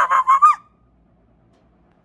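A young girl's high-pitched, drawn-out screech, which cuts off sharply about half a second in.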